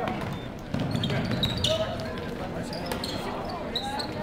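A basketball bouncing on a gym's hardwood floor as it is dribbled, with people talking nearby.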